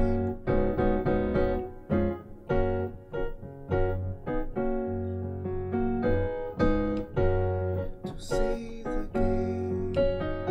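Piano playing slow gospel chord voicings in F-sharp, each chord struck and held over a low F-sharp bass note, a new chord roughly every second.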